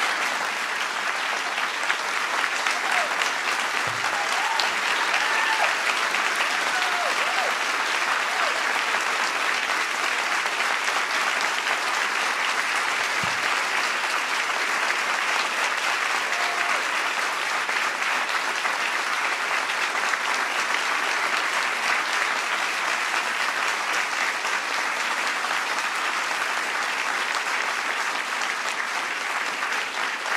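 Steady, sustained applause from a large audience, with a few faint voices audible in it.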